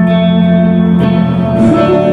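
Electric guitar and keyboard playing an instrumental passage of sustained, ringing chords, with a new chord struck about a second in and another change near the end.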